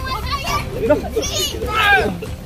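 Children's high-pitched voices calling out during rough play, with the loudest outburst near the end.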